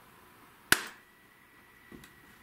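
A single sharp impact sound, like a knock or a slap, about three quarters of a second in, dying away within a quarter second, against quiet room tone with a faint steady high hum.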